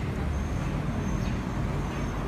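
Steady low rumble of street traffic, with a faint high thin whine through most of it.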